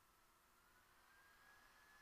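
Near silence: only a faint hiss.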